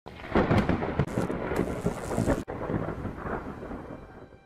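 Loud rumbling, crackling noise like rolling thunder. It breaks off sharply about two and a half seconds in, then rumbles on more softly and fades near the end.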